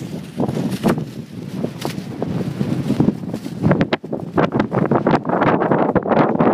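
Sandstorm wind buffeting the microphone in irregular, rumbling gusts that grow stronger in the second half.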